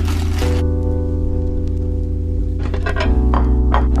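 Background music: held chords over a steady bass, the chord changing about half a second in and again near the end.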